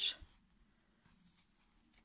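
Faint rustle of acrylic yarn being drawn through stitches with a crochet hook, following the tail of a spoken word at the very start; otherwise near silence.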